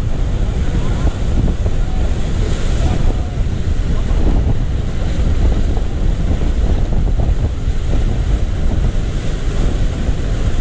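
Whitewater rushing around an inflatable raft running a river rapid, steady and loud, with heavy wind buffeting on the camera's microphone.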